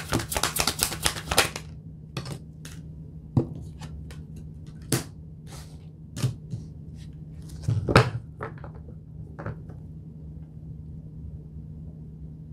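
A deck of tarot cards being riffle-shuffled: a rapid run of card clicks for about the first second and a half, then scattered single clicks and taps as the deck is split and handled.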